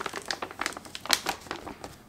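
Clear plastic vacuum storage bag crinkling as its double zip seal is closed with the bag's plastic sealing clip, a rapid run of small crackling clicks.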